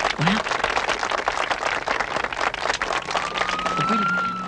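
A room of people applauding, with a short rising voice about a quarter second in. Near the end a siren starts up, its pitch rising.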